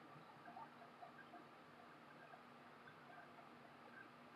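Near silence: room tone with a few faint, tiny ticks.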